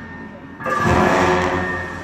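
Large Tibetan ritual cymbals clashed once about half a second in, with a low drum beat under it, ringing and fading over about a second. This is the music that accompanies the masked dance.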